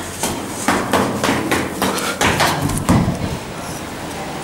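Footsteps going down the fire stairs, about two steps a second, with a heavier thud about three seconds in.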